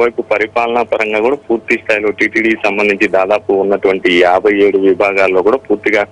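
A man speaking Telugu without a pause, his voice coming over a telephone line.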